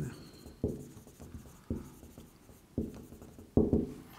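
Marker writing on a whiteboard: a series of short separate strokes, the loudest near the end.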